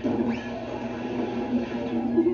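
Old cartoon soundtrack playing from a TV: music comes in suddenly and loudly at the start and carries on with several held notes.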